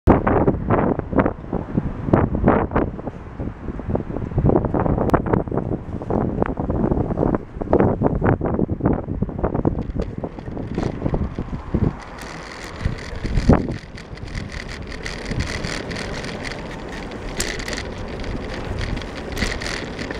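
Wind buffeting the microphone of a cyclist's action camera, broken by irregular knocks and bumps for about the first twelve seconds as the bicycle sets off. After that the bicycle rolls along steadily with a more even rush of wind and road noise, and one sharp knock a little after the change.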